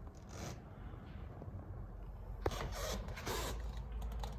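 Quiet scraping and rustling handling noise from a handheld camera being moved around, with a single sharp click about two and a half seconds in, over a low steady room hum.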